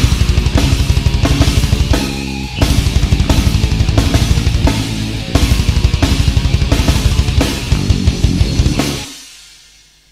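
Death/thrash metal band playing: fast drumming with bass drum under distorted guitars, with a short break about two seconds in. The song ends about nine seconds in, the last chord dying away.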